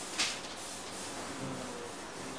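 A short, sharp scrape of a hard black cylindrical part being handled and fitted together by hand, about a quarter second in, over a steady low hiss.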